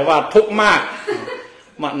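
A man speaking Thai with a short chuckle in his voice, trailing off into a brief pause near the end.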